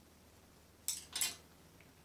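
Two short scratchy rustles close together about a second in: paintbrushes being handled on a paper towel as one brush is set down and another picked up.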